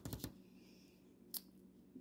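Very faint handling of a paper flyer: a brief rustle at the start and a single sharp click about a second and a half in, over a low steady hum.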